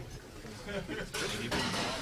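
Indistinct voices in the background, with a burst of rustling noise in the second half.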